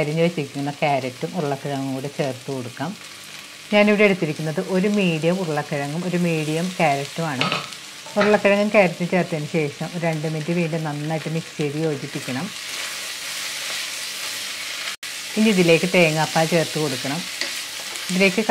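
Chicken and onions sizzling in oil in an open pressure cooker while potato and carrot pieces go in and the mix is stirred, under a voice talking in stretches with short pauses.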